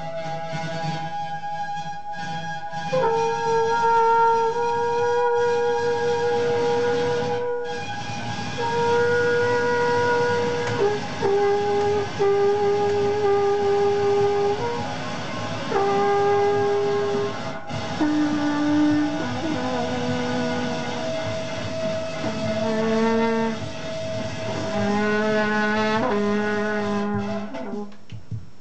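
A small French horn plays long held notes, starting about three seconds in and stepping down in pitch over a steady background drone. The last notes waver.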